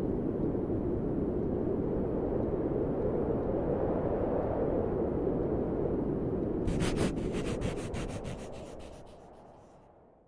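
Sound effect for an animated logo outro: a steady low rushing noise, joined about seven seconds in by a rapid flickering shimmer, about six flickers a second. Both fade out over the last few seconds.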